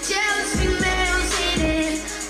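Pop song recording: a solo voice singing a melody over a bass line and a beat that lands about once a second.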